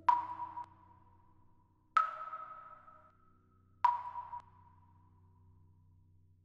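Three single chime-like notes about two seconds apart, each struck sharply and then ringing out and fading, over a faint low held tone.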